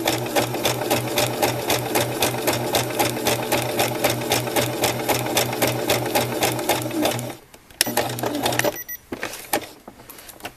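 Baby Lock Xscape BL66 sewing machine running a zigzag stitch, its needle mechanism going at a steady, rapid rhythm of about six stitches a second over a motor hum. It stops about seven seconds in, runs again briefly for about a second, then stops.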